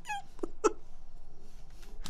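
A man's laughter trailing off: a high squeak that falls in pitch, then two short breathy laugh pulses in the first second, after which it goes quiet.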